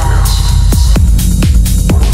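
Dark techno: a deep kick drum about twice a second over a steady throbbing bass, with hi-hats above and a falling synth sweep fading out at the start.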